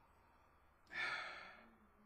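A man's single breathy sigh about a second in, starting suddenly and fading away over most of a second.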